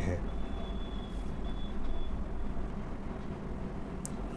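Steady low background rumble, with a faint thin high tone heard for the first couple of seconds.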